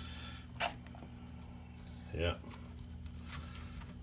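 Faint wet squishing of bread dressing being pushed by hand into a boiled moose heart, with one short sharp tick about half a second in, over a steady low hum.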